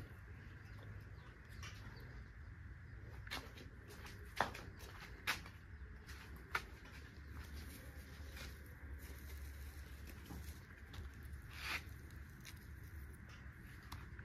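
Hand-picking straw mushrooms from rice-straw beds: faint rustling of the straw with a few short, sharp ticks and taps a second or more apart, over a low steady hum.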